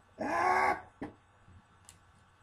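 A short, loud vocal cry, its pitch rising and then falling, voiced as a wrestler's pain or effort sound while the action figures are made to fight; a single sharp click follows about a second in, a plastic toy knocking.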